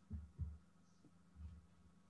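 Near silence with three brief, faint low thumps, the first two close together near the start and the third about a second and a half in.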